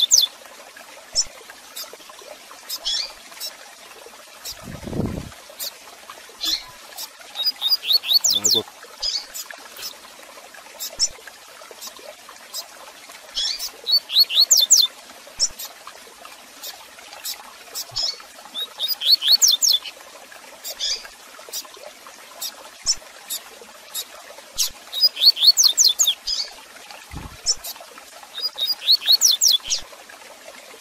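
Double-collared seedeater (coleiro) singing its "tui tui zel zel" song, bursts of rapid high sweeping notes repeated every few seconds, with single sharp chirps in between. A brief low rumble comes about five seconds in and again near the end.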